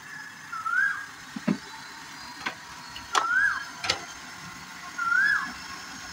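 A bird repeating a short whistled call, rising then dropping, about every two seconds over the steady hum of a car engine running, with a few sharp clicks in between.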